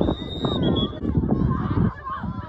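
A whistle sounds two short high notes near the start, the second a little lower and shorter than the first, over a background of crowd voices and shouting.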